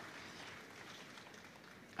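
Faint, steady background noise of a large indoor show arena, with no distinct sounds standing out.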